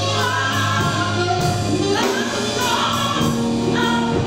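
Small gospel choir singing in parts at microphones, with a live band underneath: a sustained low bass and light cymbal wash.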